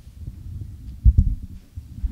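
Microphone handling noise: dull low thumps and rumble as a handheld microphone is moved and gripped, with the loudest knock about a second in.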